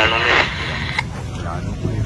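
A man's voice for the first half-second, then street background: a steady low rumble with faint voices and a single click about a second in.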